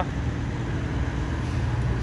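Diesel semi-truck engines running with a steady low rumble as a tanker truck drives slowly across the truck-stop lot.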